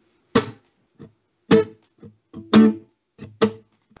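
Acoustic guitar played in short, choppy strums, about two a second with the louder ones roughly once a second, each stroke cut off quickly: reggae-style percussive chops with the strings damped by the fretting hand.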